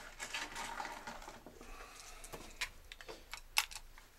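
Handling noise: light rustling and scattered small clicks, with a few sharper clicks in the second half, as the camera is picked up and turned around.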